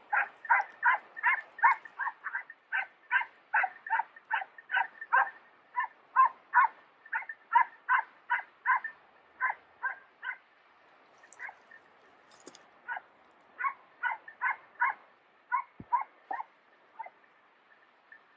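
Hunting dogs barking in a steady run of short barks, about three a second, thinning out after about ten seconds and stopping near the end: the pack giving chase to a wounded wild boar.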